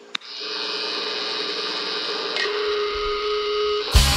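A sustained drone of several steady held tones, with a low rumble joining about two and a half seconds in, building into a loud hit at the very end where a heavy guitar-rock theme kicks in.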